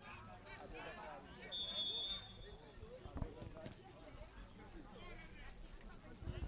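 Faint shouts of players on the pitch, with a referee's whistle blown once, a steady high blast of about a second, letting the free kick be taken. Two thumps follow about three seconds in.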